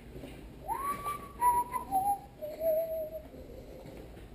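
A person whistling a short phrase: one clear note rises and holds, then steps down through three or four lower notes, ending a little after three seconds.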